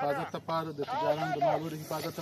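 A man speaking in a language other than English, in a steady run of speech.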